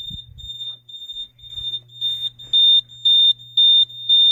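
Fire alarm panel's piezo sounder beeping a single high tone about twice a second, much louder in the second half, signalling a supervisory condition after the emergency push station has been activated. A low steady hum runs underneath.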